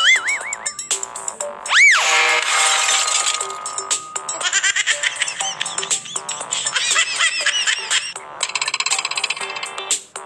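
Cartoon comedy sound effects over background music: a loud boing that sweeps up and back down about two seconds in, then a run of smaller springy, wobbling pitch glides and fast warbling tones.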